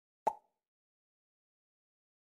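A single short pop sound effect, a quick click-like blip, cueing the on-screen "Repeat, please!" prompt for the learner to say the word.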